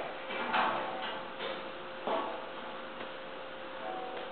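Steady room noise of a rainstorm, an even hiss, with a faint steady hum as the heating comes on.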